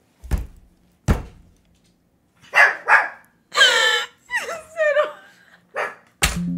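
Two dull thumps about a second apart, then a woman laughing hard in high-pitched shrieks and squeals.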